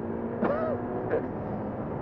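Ferrari twin-turbocharged V8 engine running at a steady pitch, with a short vocal sound about half a second in.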